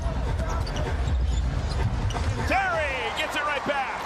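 Basketball being dribbled on a hardwood arena court over a steady low arena rumble, with a burst of sneaker squeaks in the last second and a half.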